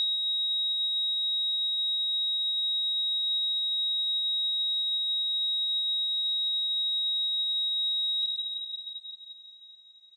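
A single steady high-pitched tone, the film sound effect of ringing ears after a gunshot. It holds unchanged for about eight seconds, then fades away near the end.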